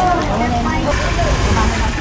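Several people talking at once in the background, over the low steady running of a motorbike engine close by.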